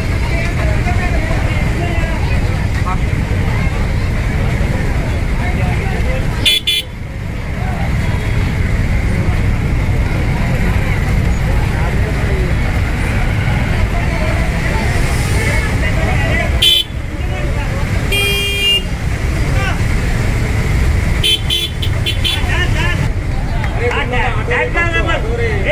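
Busy street noise of crowd chatter and vehicles, with a vehicle horn sounding once for about a second, a little past the middle.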